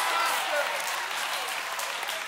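Church congregation applauding, with a few faint voices calling out near the start.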